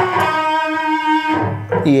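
Electric guitar playing a single held note, the 14th fret of the fourth string, ringing steadily for about a second and a half before dying away.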